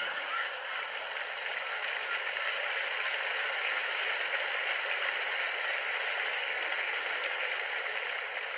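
Theatre audience applauding, a dense, even clapping that holds steady for several seconds and eases slightly near the end.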